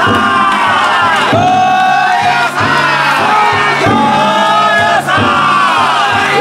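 A large group of yatai bearers chanting in unison. Each long call glides down and then holds, and it repeats about every 1.2 s. Underneath, the float's big taiko drum beats a steady rhythm.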